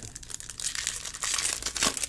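Crinkling of foil trading-card pack wrappers being handled and opened, an irregular rustle that grows busier after about a second, with a sharp click just before the end.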